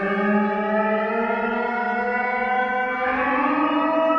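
Sustained electronic drone from a modular synthesizer: several steady tones sounding together and gliding slowly upward in pitch, with a new layer of tones coming in about three seconds in.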